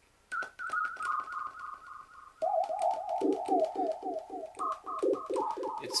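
Siren-like electronic tone from a homemade one-button synthesizer on an STM32F4 Discovery board, repeated by its delay effect into a rapid train of echoes with clicky onsets. It starts high and sags slightly in pitch. About two and a half seconds in, a lower tone with repeated falling glides joins, and near the end a higher pitch steps back in.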